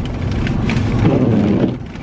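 Car cabin noise while driving: a steady low rumble of road and engine noise with a rushing hiss. A short low hum comes through about a second in.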